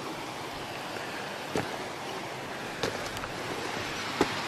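A steady rushing noise, with a few short knocks of footsteps on stony ground scattered through it.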